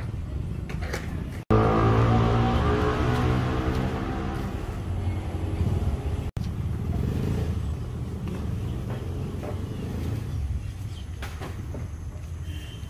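An engine running close by, loudest just after an abrupt cut about a second and a half in and then fading away over a few seconds, over a steady low rumble. The sound breaks off sharply again near the middle.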